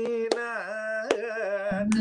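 A man singing a Carnatic song phrase: long held notes with slow gliding ornaments. Three sharp hand snaps about three-quarters of a second apart keep the beat.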